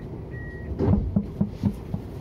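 Siemens ULF A1 tram at a stop: the high door-warning beep sounds one last time, then the doors shut with a quick run of knocks and thuds about a second in.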